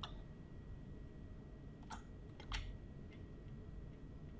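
Quiet room tone with a few short computer-mouse clicks, the loudest pair about two and a half seconds in.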